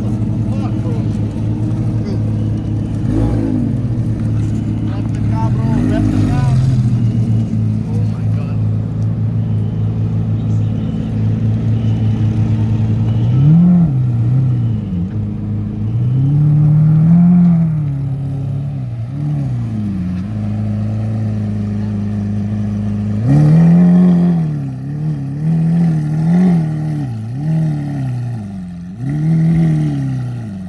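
Lamborghini supercar engines idling with a loud, steady drone. From about halfway on, the V12 of a Lamborghini Aventador SV roadster gives repeated short throttle blips, each rising and falling in pitch, in two clusters as it creeps forward.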